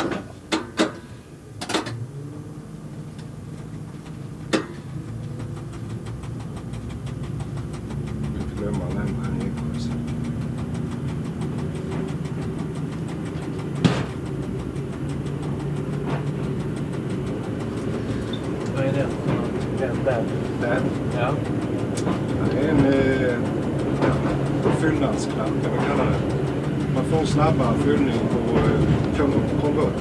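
Y1 railcar's Volvo diesel engine and Allison automatic transmission pulling away from a station, the running sound growing steadily louder as the railcar picks up speed. A few sharp clicks come in the first two seconds, and another at about a quarter of the way through.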